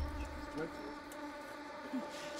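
A steady buzzing drone that holds one pitch with many overtones, with a brief faint voice sound about half a second in.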